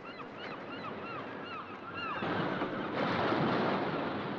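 Seabirds calling over and over in short arched cries. About two seconds in, a rushing noise swells up and covers them.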